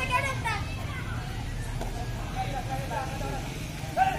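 Boys' voices calling out during a kabaddi raid, loudest in the first half-second and again around the middle, over a steady low background rumble.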